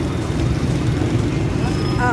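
Busy street traffic: motorcycle engines running as a steady low rumble, with crowd voices mixed in.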